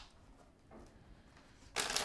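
A deck of tarot cards being riffle-shuffled: mostly quiet at first, then near the end a loud, rapid rattle as the two halves riffle together.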